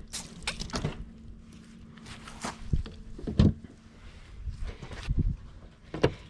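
Scattered soft knocks and handling noises as wet redfish fillet pieces are handled on a plastic table and dropped into a bowl, with a faint steady hum underneath for most of it.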